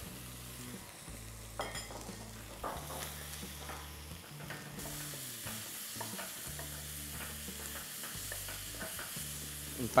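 A wooden spatula stirring and scraping chopped tomatoes and green chillies as they fry in a pot, with a soft sizzle and a low steady hum underneath.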